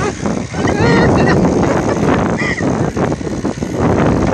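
Indistinct voices over a steady rumble of wind on the microphone, with short bursts of voice about a second in and again past the middle.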